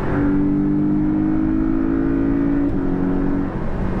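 2018 Porsche 718 Cayman's turbocharged flat-four accelerating hard in a lower gear, heard from inside the cabin. The engine note climbs steadily, then drops with an upshift about three-quarters of the way through.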